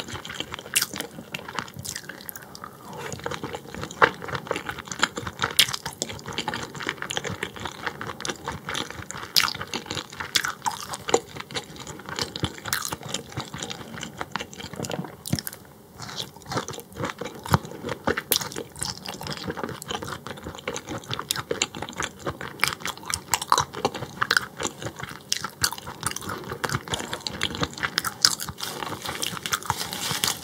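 Close-miked chewing of raw croaker (minneo) sashimi: dense, irregular wet mouth clicks and smacks, with a brief lull about halfway.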